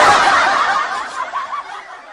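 A laugh track of a group laughing. It comes in loud at the start and dies away over about two seconds.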